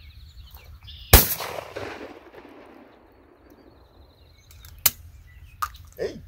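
A single shotgun blast at a clay target about a second in, its report dying away over a second or so. A shorter, fainter crack follows near the end.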